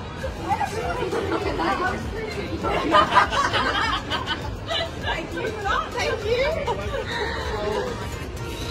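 Street chatter and laughter from several people, with a burst of loud laughter about three seconds in.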